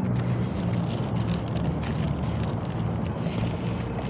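Street traffic driving past: a steady engine hum under a haze of road noise, with some wind on the microphone.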